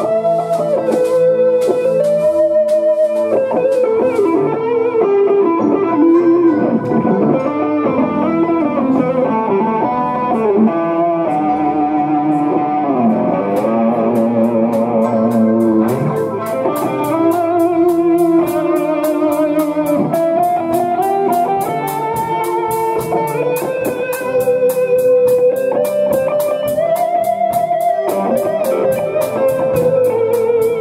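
A live band jamming: an electric guitar played through a Marshall amp stack takes the lead with bending, sliding notes, over a drum kit keeping a steady beat and a keyboard. The keyboard runs through a GaN FET Class D audio amplifier.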